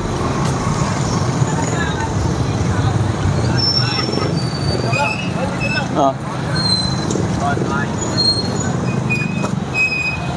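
Steady street traffic noise with motorcycle tricycle engines running close by, a constant low hum, and faint voices in the background. A few brief high chirps come through now and then.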